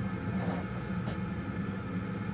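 A steady low hum, with two faint brief rustles about half a second and a second in.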